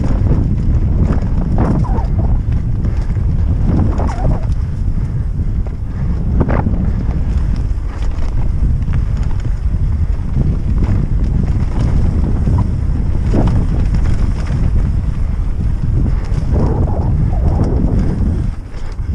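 Wind buffeting the microphone in a heavy, continuous low rumble, with the irregular knocks and rattles of a Norco Aurum downhill mountain bike riding fast over a rough, rooty and rocky trail.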